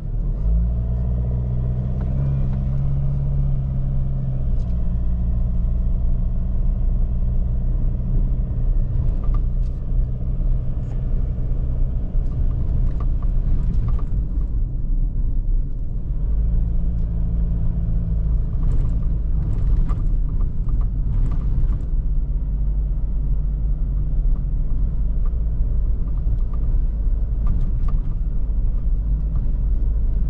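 Ford Ranger 2.2 four-cylinder turbodiesel running at low speed, heard from inside the cab, with a steady low drone and tyre rumble from the rutted dirt track. The engine note fades back about halfway through and picks up again a few seconds later. Short knocks and rattles come in small clusters as the truck goes over the ruts.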